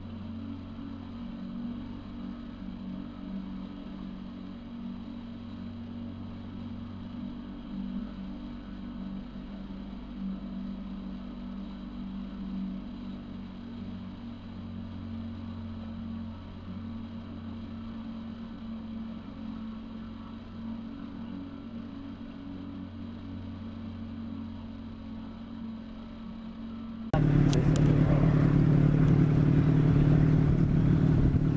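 A boat's motor running steadily with a low, even hum. Near the end it suddenly becomes much louder and rougher.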